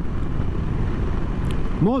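Moto Guzzi V85TT's air-cooled transverse V-twin running at a steady cruise, a continuous low rumble mixed with wind rushing over the microphone. A man's voice starts near the end.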